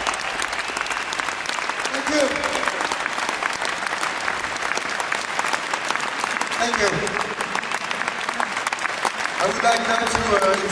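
Large concert audience applauding steadily, with a few voices shouting out.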